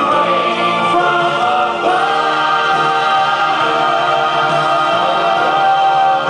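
Mixed church choir singing a gospel song together with a male soloist on a microphone, holding long notes; the chord changes about two seconds in.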